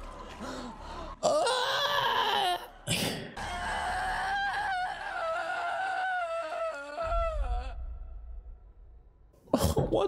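A woman's screams of labour pain in film audio: a loud cry after about a second, then one long wavering scream held for about four seconds before it fades.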